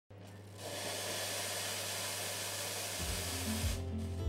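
Espresso machine steam wand hissing steadily, cutting off just before the four-second mark. Guitar music comes in about three seconds in.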